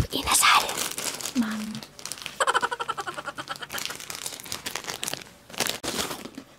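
Crackly crinkling of thin plastic snack wrappers, handled close to a small clip-on microphone, with brief vocal sounds in between.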